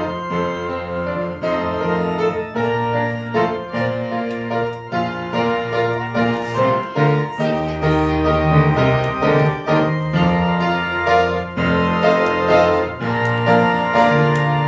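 Keyboard instrument playing slow, held chords over a low bass line: instrumental church music.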